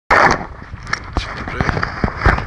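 A handheld camera being swung round and gripped, with a loud rub on the microphone at the start and then several sharp knocks and clicks. A man's voice comes in briefly.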